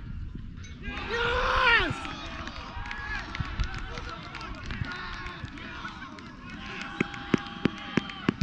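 Players shouting across an open football pitch, with one loud, drawn-out call about a second in and fainter calls around it. Near the end a run of sharp knocks sounds close to the microphone.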